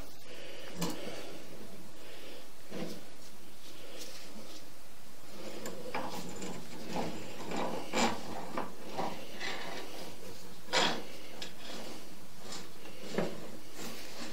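Sewer inspection camera being fed into a 6-inch cast iron drain: occasional short knocks and rubs from the push cable and camera head, over a steady hiss.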